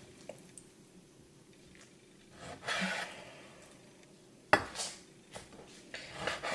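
Kitchen knife slicing through raw salmon on a wooden chopping board: a soft rasping stroke about halfway through and a sharp tap of the blade on the board near the end, with small ticks between.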